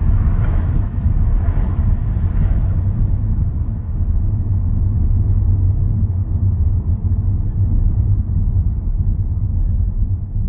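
Car driving through city streets: a steady low rumble of engine and road noise, with a few brief rushing swishes in the first three seconds.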